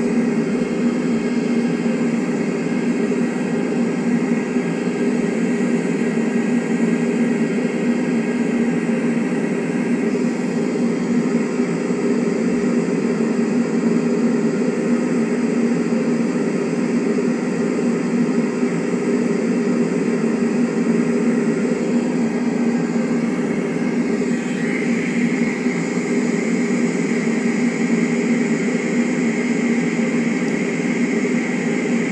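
A loud, steady mechanical drone with a rushing noise over it and no break, like a running machine or engine heard from inside; its higher tone shifts slightly about three quarters of the way through.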